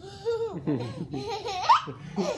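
Toddler laughing in a run of high-pitched giggles, ending in a loud rising squeal near the end.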